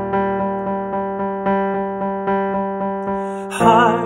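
Piano accompaniment of a pop ballad playing chords re-struck about four times a second. Near the end a tenor voice comes in on a sung note with vibrato.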